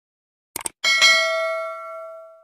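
Subscribe-button sound effects: a quick double mouse click a little over half a second in, then a single notification-bell ding that rings on and fades away.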